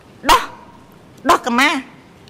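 A woman speaking Khmer into a microphone in short, clipped phrases separated by pauses: a brief syllable early on, then a longer phrase about halfway through.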